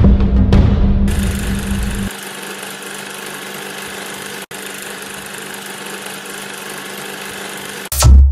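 Intro sound effects: a low booming drum rumble fades out about two seconds in, giving way to the steady mechanical whirr and hiss of a running film projector, with a brief break in the middle and a loud hit right at the end.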